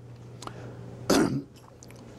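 A man's single short throat-clearing cough, about a second in, over a low steady hum.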